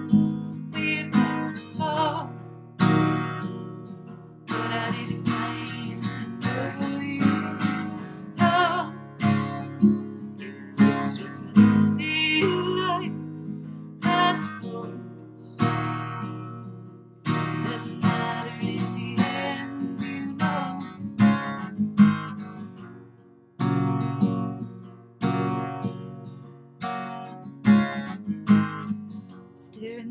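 Acoustic guitar strummed in a slow song in D-flat major, with a woman's voice singing over it at times.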